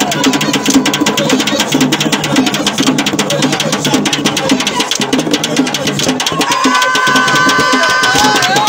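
Malamu dance music: fast, dense hand drumming with voices chanting over it. Near the end, high held tones join in.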